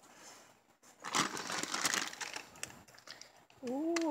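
A Lay's barbecue potato-chip bag crinkling as it is handled, a crackly rustle that starts about a second in and lasts about two seconds.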